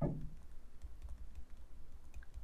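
Faint, irregular light taps and scratches of a stylus writing on a tablet, over a low steady hum.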